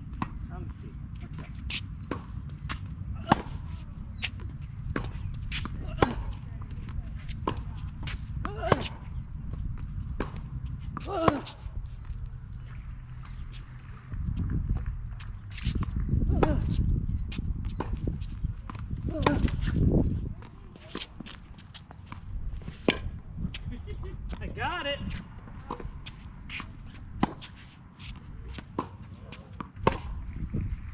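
A tennis rally: racquets strike a tennis ball with sharp pops every two to three seconds, with lighter knocks between them, over a steady low rumble.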